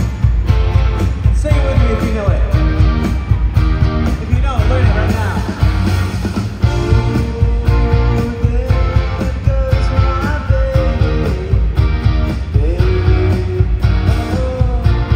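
Live rock band playing an upbeat song through an arena PA, with a steady drum beat, bass and guitar, and a voice singing over it.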